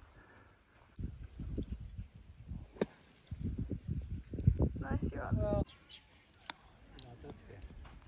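A golf bunker shot: one sharp strike about three seconds in as the club hits the ball out of the sand, with wind buffeting the microphone throughout.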